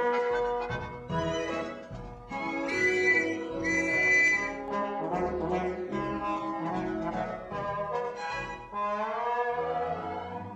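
Orchestral cartoon score with brass to the fore, in quick, changing phrases and a rising slide near the end.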